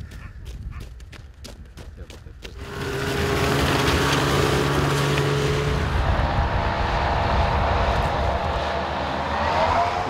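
Hovercraft running across snow-covered ice. Its engine and propeller fan come in loud about two and a half seconds in and hold steady, with a rising whine near the end.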